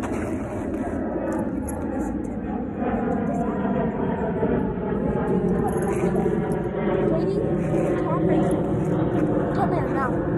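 A steady engine drone whose pitch falls slowly as it goes by, with a few short higher chirps near the end.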